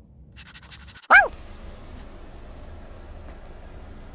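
A golden retriever gives one short, loud bark, falling in pitch, about a second in, after a run of faint ticks.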